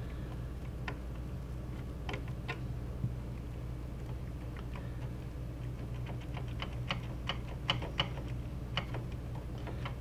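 Light, irregular clicks and ticks of a metal flathead screwdriver against a CPU heat sink and its screws, coming faster in the second half as the heat sink is levered up where thermal paste holds it stuck to the processor.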